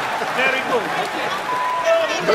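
Several voices talking over one another over the noisy background of a busy hot-dog counter, with a short steady tone near the end.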